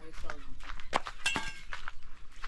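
An indistinct voice with a cluster of sharp clicks and clinks around the middle.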